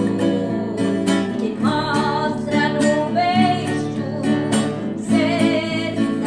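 A woman singing a sertanejo song over acoustic guitar strumming in a steady rhythm.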